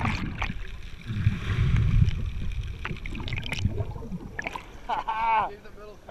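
Sea water washing around an action camera dunked under the surface: a splash, then a low muffled rumble under water, then a few sharp splashes and knocks as it comes back up. A person calls out briefly near the end.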